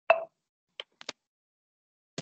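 A short blip right at the start, then three quick, sharp clicks about a second in. Each sound stops dead, with total silence between, as heard over a video call's gated audio.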